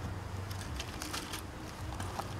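Faint taps and rustles of small metal grinding attachments and plastic blister packs being handled and set down on a cloth drop sheet, over a low steady background hum.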